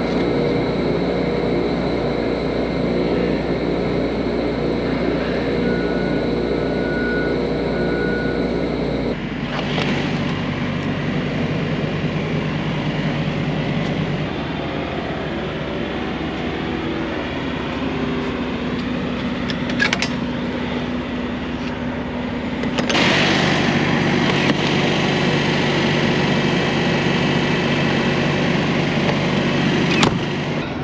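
Steady machinery hum holding several fixed tones, with two short high beeps a few seconds in. After about nine seconds it gives way to a rougher, noisier rumble of vehicle engines in a truck yard, with a single sharp click near twenty seconds and a louder stretch in the last seven seconds.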